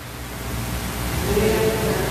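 Faint, distant voices of the congregation calling out answers to the priest's question, over a steady hiss, growing louder in the second half.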